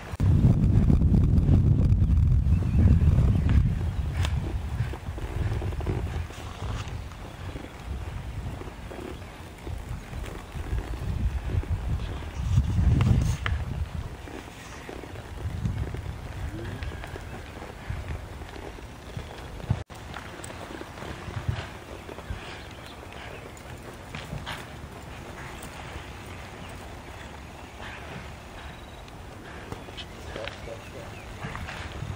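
A cutting horse working cattle on soft arena dirt, with hoof thuds and cattle movement. A low rumbling noise is loud through the first few seconds and swells again about twelve seconds in.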